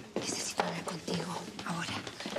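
A woman speaking softly in a low, whispered voice, close to the listener's ear.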